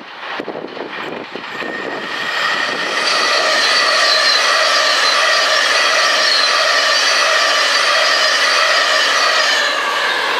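LMS Stanier 8F 2-8-0 steam locomotive 48151 letting off a loud, steady rush of steam with a ringing tone in it, building up over the first few seconds and easing off near the end.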